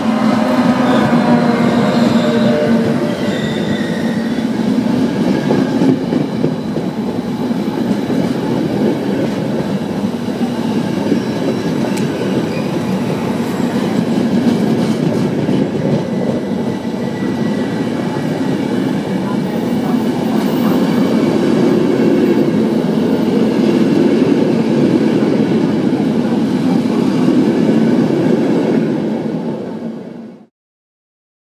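Electric locomotive-hauled Frecciabianca train passing at speed. The locomotive's whine is heard in the first few seconds, then a long, loud, steady rumble and rattle of the coaches' wheels on the rails, which drops away near the end.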